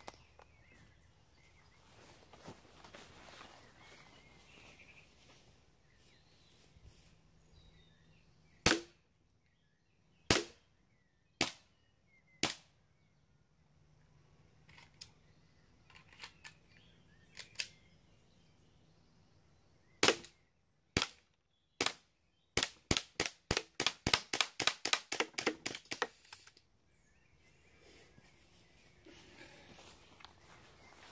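CO2 blowback Luger P08 softair pistol firing sharp cracks: four single shots spaced a second or so apart, then three more, then a fast string of about fifteen shots at roughly four a second.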